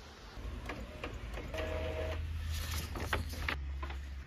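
Inkjet printer printing: scattered clicks from the print head and paper feed, with a steady motor hum that starts about a second and a half in and a short higher whine at its start.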